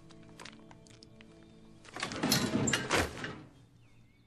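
Film soundtrack: quiet sustained music tones, then about two seconds in a loud, rough thud-like sound effect lasting over a second before fading.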